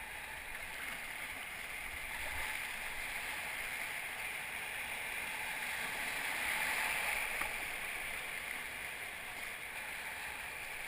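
Whitewater rapid rushing around an inflatable kayak: a steady noise of rough water that grows louder about two-thirds of the way through as the boat runs the waves.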